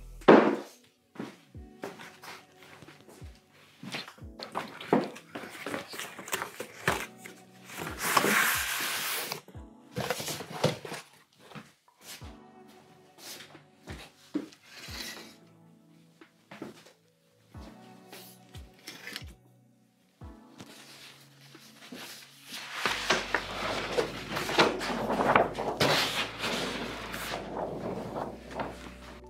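Background music over the knocks and clunks of a C-stand rod and a paper backdrop roll being handled. The paper rustles, briefly about eight seconds in and again over the last five seconds as the roll is pulled down.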